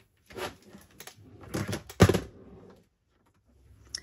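Handling sounds as a small plastic ink re-inker bottle is fetched and uncapped, with one sharp knock about two seconds in.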